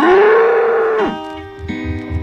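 A cartoon bull's long moo: it rises in pitch, holds steady for about a second, then drops away. Music with a regular beat comes in after it.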